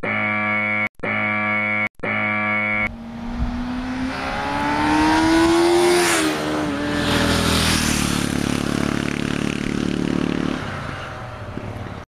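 Three equal blasts of a steady horn-like tone, each just under a second. Then a motor vehicle sound rises in pitch, peaks about six seconds in, and falls away as it passes. It fades out near the end.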